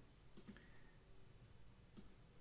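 Near silence with a faint computer mouse click about half a second in.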